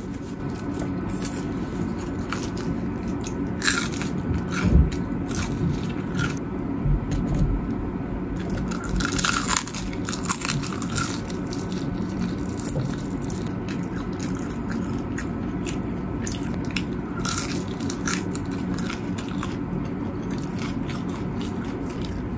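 Crispy Korean fried chicken being bitten and chewed close to the microphone: scattered crisp crunches over a steady low background hum.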